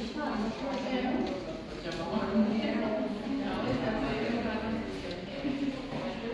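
People talking in a room: continuous conversational speech, not picked up as words.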